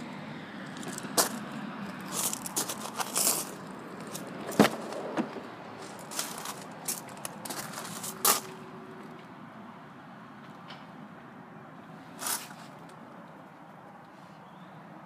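A car's rear door being unlatched and swung open, with handling noise: a string of sharp clicks and knocks over the first eight seconds, the loudest about four and a half seconds in, and one more near the end.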